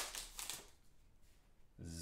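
Cellophane wrapper of a Prizm basketball card pack crinkling as it is torn open and the cards are slid out. A short rustle at the start fades within the first half-second or so. A man's voice comes in near the end.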